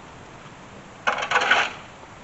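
A long-handled metal hand tool striking and scraping the ground at the base of a fence post: a quick clatter of ringing metallic clinks about a second in, lasting just over half a second.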